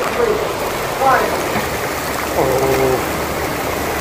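Heavy rain pouring down in a storm, a steady rushing noise. A voice sounds briefly a couple of times over it.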